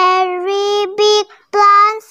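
A young girl's voice reading aloud in a drawn-out sing-song, three syllables each held on a steady pitch.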